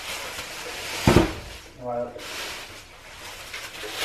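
Plastic grocery bag rustling and crinkling as items are pulled out of it, with a single sharp thump about a second in.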